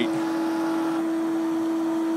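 A steady hum held on one strong pitch, with a faint hiss beneath it.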